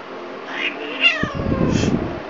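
Angry domestic cat's short yowl about a second in, falling in pitch, followed by a low pulsing growl. It is the sound of a bad-tempered cat that will not let itself be picked up.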